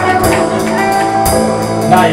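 Live blues-rock power trio playing: electric guitars, bass guitar and drum kit together.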